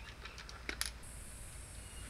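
Faint plastic clicks from handling a Tasco trail camera with its battery tray just pushed back in, two sharp ticks a little under a second in. A steady high hiss comes in about halfway through.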